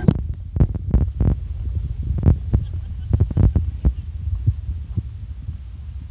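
Low, steady rumble of a car driving slowly over a rough, unpaved road, heard from inside the car, with irregular knocks and thumps that come thickest in the first few seconds and thin out toward the end.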